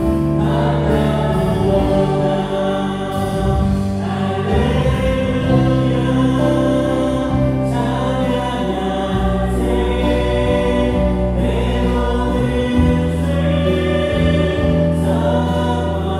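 Live church praise band playing a worship hymn, with electric guitar, bass guitar, keyboards and drums under several voices singing.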